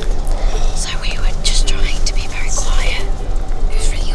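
Whispering voices over the steady low rumble inside a coach on the road.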